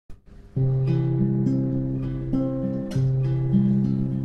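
Two classical guitars playing a folk tune as a duet, one taking the melody and the other a plucked accompaniment, the playing starting about half a second in.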